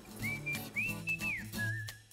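Background music led by a whistled melody, with a long high note in the middle that falls away and a wavering note near the end, over steady low bass notes.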